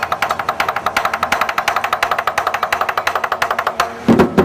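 Lion dance cymbals struck in a rapid, even tremolo of about ten clashes a second, without the big drum, stopping just at the end.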